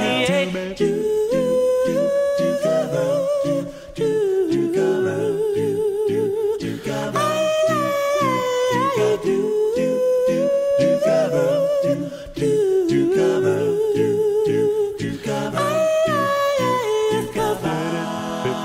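An a cappella doo-wop vocal group singing without words. A lead voice carries a melody with a wobbling vibrato over a bass and backing voices repeating short rhythmic syllables.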